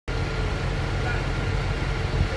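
A fire engine's engine running at idle: a steady low rumble with a faint steady hum above it.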